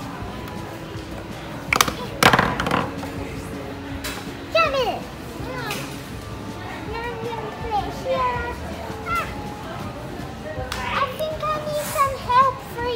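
A child's high voice making playful, wordless sliding squeals and sing-song sounds, with a few sharp clacks about two seconds in, over background music.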